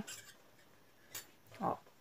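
A single light click a little over a second in as a metal crochet hook is set down on the table, amid faint handling of the cotton crochet piece.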